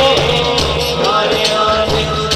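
Male voice singing a devotional hamd, a song in praise of God, into a microphone, over a steady low backing and a regular percussion beat.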